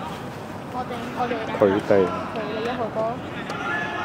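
A man speaking Cantonese, with faint open-air background noise.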